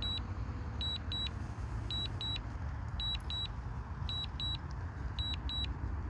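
DJI Mavic Air 2 remote controller sounding its return-to-home warning: high-pitched double beeps, one pair about every second, five pairs in all. They play over a steady low rumble.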